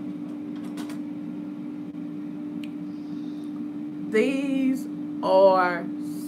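A woman's voice making two short wordless sounds of enjoyment while tasting food, about four and five seconds in, over a steady low electrical hum with a few faint clicks near the start.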